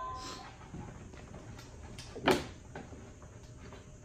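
A cardboard toy box being handled and lifted out of a shipping carton: scattered soft bumps and rustles of cardboard, with one louder bump a little past halfway.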